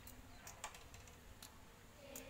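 Near silence, with a few faint, sharp clicks.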